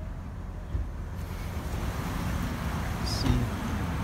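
Wind rushing over the phone's microphone with a low rumble, swelling into a broad hiss about a second in, with a faint knock just before.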